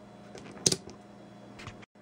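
A few short clicks, the loudest about two-thirds of a second in: the rotary dial of a handheld digital multimeter being turned to off. A low steady hum runs underneath.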